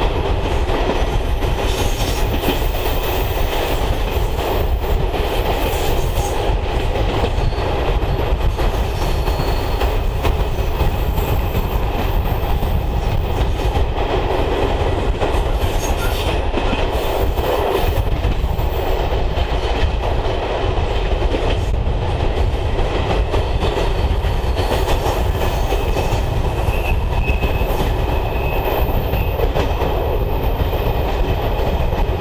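Loco-hauled passenger train running along a branch line, heard from an open coach window: a steady rumble of wheels on rail with continual clickety-clack from the track. The train is hauled by a ČKD class 749/751 diesel locomotive.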